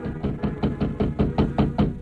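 Rapid, even knocking on a door, about five knocks a second, urgent pounding to be let in. This is a radio drama sound effect.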